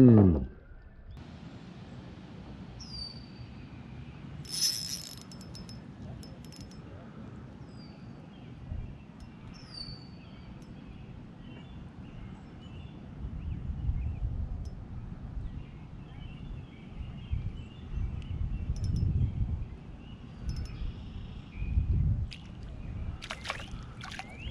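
Quiet outdoor ambience on open water around a kayak: soft water sounds with occasional low bumps, and a few short high bird chirps.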